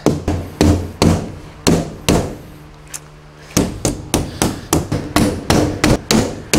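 Claw hammer repeatedly striking a plywood shipping crate to knock it open: a run of sharp blows about two a second, a pause of about a second near the middle, then a quicker run of blows.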